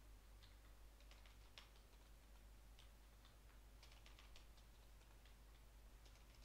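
Faint typing on a computer keyboard: scattered, irregular keystrokes over a low steady hum.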